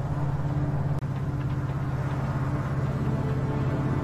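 Steady low drone of a car being driven, heard from inside the cabin.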